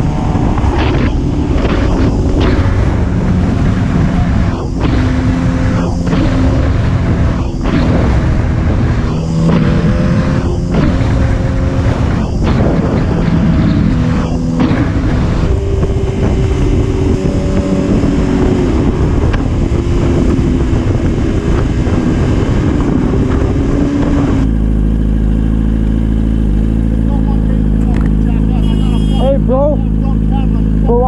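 Sport motorcycle riding at freeway speed, its engine note shifting up and down under wind rush on the helmet-mounted microphone. About 24 seconds in the sound changes abruptly to the engine idling steadily with the bike at a standstill.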